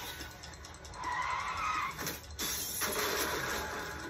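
Film teaser soundtrack played back in a small room: cinematic sound effects with a wavering tone about a second in, then a sharp hit a little past the midpoint.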